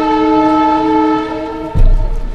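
Train horn sounding a long, steady chord of several tones that stops shortly before the end, followed by a low thump.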